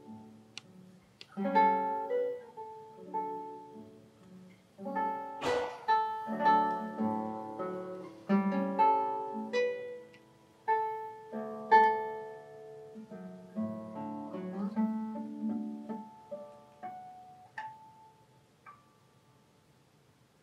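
Ignacio Fleta classical guitar played solo with the fingers: plucked notes and chords in phrases with short pauses, with one sharp percussive stroke about five and a half seconds in. The playing dies away near the end.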